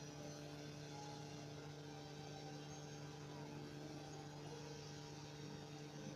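Steady, quiet electrical hum: a constant low drone with evenly spaced overtones over a faint hiss.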